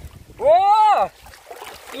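A man's loud, drawn-out exclamation of "wow", rising then falling in pitch, over the faint splash and trickle of water draining through a hand net of wet sand lifted from shallow river water.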